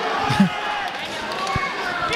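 Noise of a fight crowd with indistinct shouting from the crowd and corners. There is a dull thud about half a second in and another near the end.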